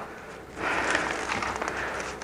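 Clear plastic clamshell packaging rustling and crinkling as it is pulled open by hand, starting about half a second in.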